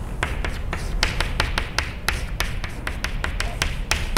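Chalk writing on a blackboard: a quick, irregular run of sharp taps as the chalk strikes the board, with short scratchy strokes in between.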